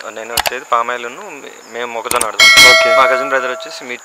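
Men's voices talking, with a loud metallic ringing clang about two and a half seconds in that fades out over about a second.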